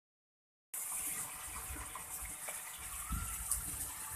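Water running steadily through a homemade 150-litre plastic-drum external pond filter, a continuous rushing splash that starts abruptly under a second in.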